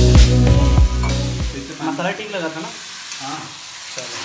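Water poured into a hot kadhai of frying onion masala sets off a loud sizzle, which carries on as the masala is stirred with a steel ladle. Background music with a heavy bass plays under it for the first second and a half.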